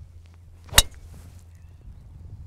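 A single sharp crack of a golf driver striking the ball, about a second in, a full-power drive hit long.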